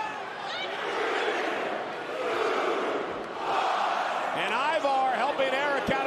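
Arena crowd cheering, swelling in waves, with individual shouting voices rising out of it in the last second or two.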